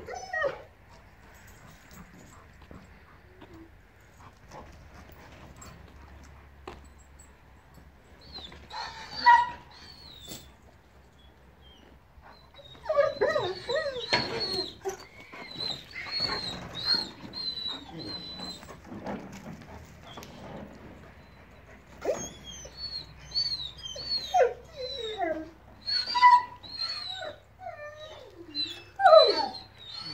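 Dog whining and whimpering: repeated short, high, sliding cries, a brief group about 9 s in, then long runs of them from about 13 s and again from about 22 s.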